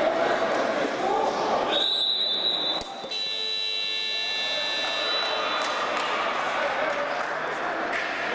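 Match timekeeper's electronic buzzer sounding for about four seconds, a high steady tone that turns harsher and fuller about a second in, signalling a stop or restart of play in indoor futsal.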